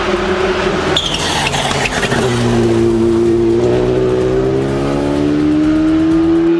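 Škoda rally car's engine heard onboard at speed on a tarmac stage: about a second in the engine note drops amid a burst of tyre and road noise as the car slows for a bend, then the engine pulls steadily up through the revs under acceleration.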